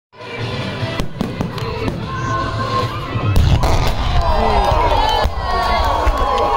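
Fireworks going off in a rapid string of sharp bangs. About three seconds in, a heavy, continuous deep rumble of explosions sets in from a ground-level pyrotechnic wall of fire, and crowd voices rise over it.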